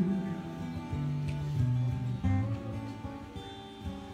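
Solo acoustic guitar playing on its own, with no voice, moving through a few chord changes and fading toward the end.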